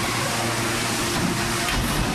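Steady crowd noise in a small gymnasium: indistinct voices of a few spectators under a steady hiss and a low hum.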